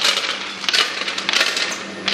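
Small hard pieces clattering and rattling in the steel weighing hoppers of a manual combination weigher, a dense stream of clicks, over a faint steady machine hum.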